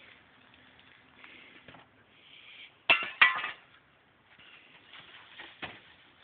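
Two sharp clinks about a third of a second apart, about three seconds in, with fainter knocks and scraping around them, from wood chips being worked into horse manure.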